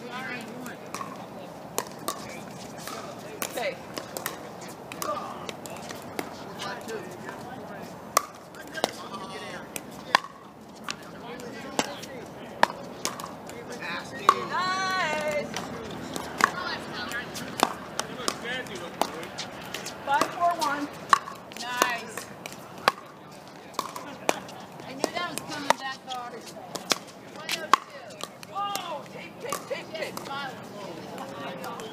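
Pickleball paddles hitting a plastic ball: sharp pops at irregular intervals throughout, over a background of players' voices, with a louder call about halfway through.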